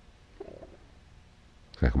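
Faint room tone in a pause of a man's talk, with a brief soft sound about half a second in; his speech starts again near the end.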